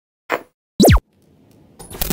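Animated logo intro sound effects. A short hit comes first, then about a second in a loud, quick bloop that glides steeply down in pitch, and near the end a rising whoosh swells.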